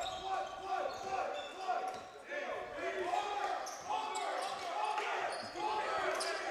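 Gym court sounds during live play: players and coaches calling out across the hall, with a basketball being dribbled on the hardwood floor.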